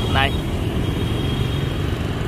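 Steady rumble of city road traffic, motorbikes and cars passing on a busy street.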